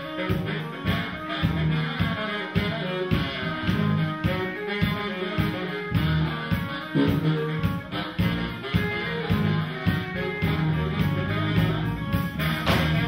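Live funk band playing an instrumental stretch: baritone saxophone over electric bass, electric guitar and drums keeping a steady beat.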